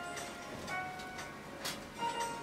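Instrumental background music: a few separate held notes, each starting with a sharp click.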